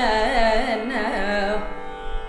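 A woman's solo Carnatic vocal line in raga Natakapriya, her pitch sliding and oscillating in quick ornaments, ending about one and a half seconds in over a steady drone that carries on alone.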